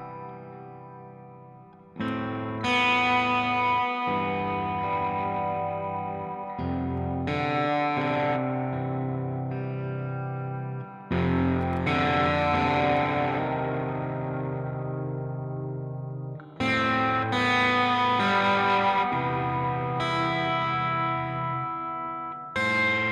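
Electric guitar with P90 pickups, a Collings 290, played through a small valve combo amp with light overdrive. Full chords are struck every four or five seconds and each is left to ring and slowly die away, after a chord fading out at the start.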